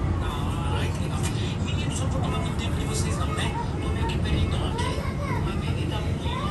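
Steady low rumble inside a running bus, with indistinct voices heard over it at several points.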